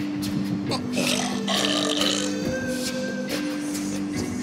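A man gagging with a belch-like retch, over music of held low notes that change pitch every second or so.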